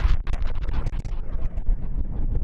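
Synthesized sound-design sample made with Composers Desktop Project, played dry in Reaktor's Metaphysical Function sampler. It is a dense, irregular crackling texture of clicks over a low rumble, with no steady pitch.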